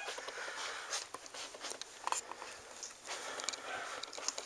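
Cats clambering through a carpeted cat tree: faint scattered rustling with light taps and scrapes at irregular intervals.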